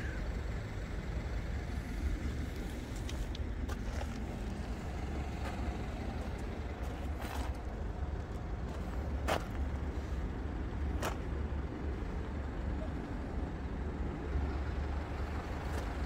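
Steady low outdoor background rumble, with a handful of short, faint clicks in the middle.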